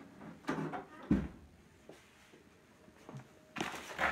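Oven door being shut, with a single low thud about a second in.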